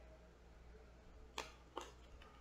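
Near silence, broken by two short, soft clicks about a second and a half in, a third of a second apart: tarot cards being handled.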